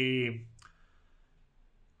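A man's voice trails off on a drawn-out word, followed about half a second later by a single short click, then low room tone.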